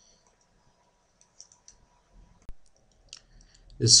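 A few faint computer mouse clicks, scattered and short, the sharpest about two and a half seconds in, over a quiet background.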